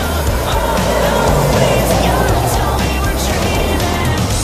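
A car driving past, its tyre and engine noise swelling to a peak about two seconds in and then fading, under pop music.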